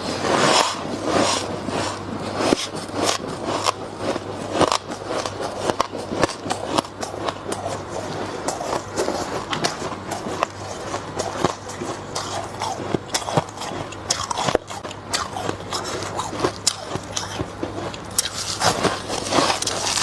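Close-miked crunching of packed freezer frost being bitten and chewed: dense, irregular crackly crunches with many sharp clicks, over a steady low hum.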